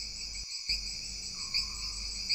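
Steady, high-pitched chirring of crickets, with a brief dip in the low background noise about half a second in.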